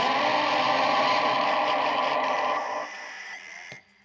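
Live noise music: a dense wall of distorted electronic noise with steady droning tones, from effects pedals and a keyboard played through PA speakers. It drops away suddenly about three seconds in, and the quieter remainder cuts off with a click just before the end.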